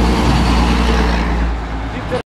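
Heavy American-style dump truck driving past close by: its diesel engine runs with a low rumble under tyre noise, getting quieter near the end as it moves away.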